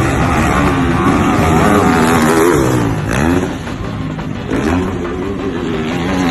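Motocross dirt bike engines revving hard, the pitch rising and falling several times with the throttle.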